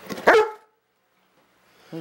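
A large brindle dog gives one short, loud bark-like vocalization in the first half second, 'talking' to beg for a treat.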